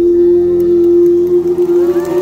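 Live concert music through a stadium sound system, reduced to one steady held note at the close of a song. A few faint rising tones come in near the end.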